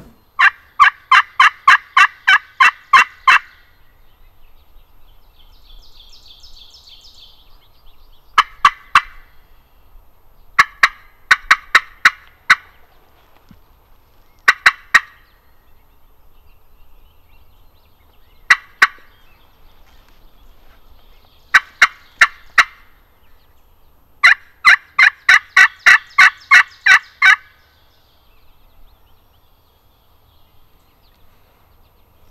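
Hen turkey calling worked on a friction pot call with a striker: a run of about a dozen quick, sharp yelps at the start, short groups of two to five notes through the middle, and another long run of yelps near the end.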